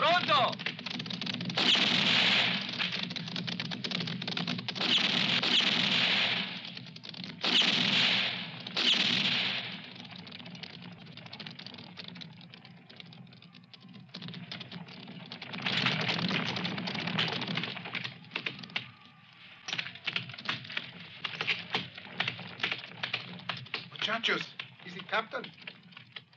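Horses' hooves on packed dirt. The sound comes in several loud spells over the first ten seconds, then turns to a quick run of sharp hoof clicks near the end as riders come in.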